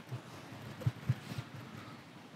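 Faint outdoor background noise with a few soft, short knocks about a second in.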